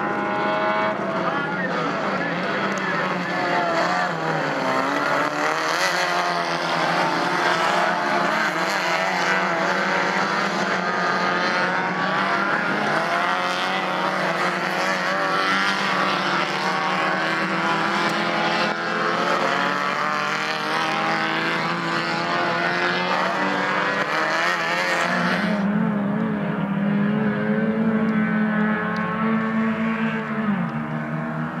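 Several Fiat race car engines running hard together, their pitches rising and falling over one another as the cars race past on a dirt circuit. About 25 seconds in, the higher sound falls away and a steadier, lower engine drone remains.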